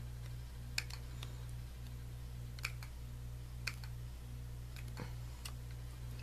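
Small spring-loaded craft snips cutting around a piece of cardstock, a sharp click with each snip: about six cuts at irregular spacing.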